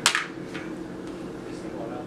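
A short hiss of a spoken "s" right at the start, then a quiet room with a faint steady hum.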